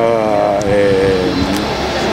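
A man's drawn-out hesitation, one held 'ehh' lasting about a second and a half that trails off.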